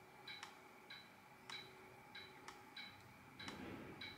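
Faint, evenly spaced clicks, about one every 0.6 seconds: an Olympus mirrorless camera and its hot-shoe flash firing through a focus-bracketed series of shots.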